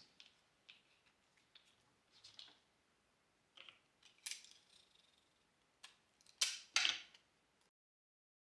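Clear sticky tape being pulled from a small desk dispenser and torn off, with paper handled in between: scattered faint rustles and clicks, a sharper tearing sound about four seconds in and two louder ones near the end.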